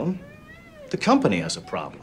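A window cleaner's rubber squeegee squeaks on wet glass in one faint squeal that rises and then falls in pitch. It is followed by a man speaking in the film's office scene.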